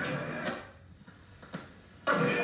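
Low hiss with two short clicks, about half a second and a second and a half in, at an edit in an old videotape recording; the earlier sound cuts out about half a second in.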